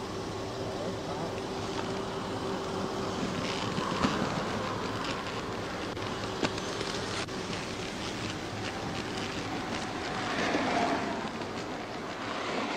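Steady roadside traffic noise with a faint steady hum, as picked up on a police dashcam recording, with a few faint clicks and a slight swell near the end.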